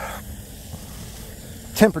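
Faint steady outdoor background hiss with no engine or motor running, then a man says one word near the end.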